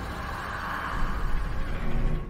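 Low, dark cinematic rumble from a trailer soundtrack, with a hiss that swells during the first second and louder uneven pulses after it.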